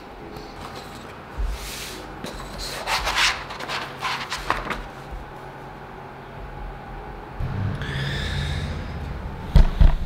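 Pen writing on paper and sheets of paper rubbing and sliding on a desk in short scratchy spells. A couple of loud thumps near the end as the camera is picked up and handled.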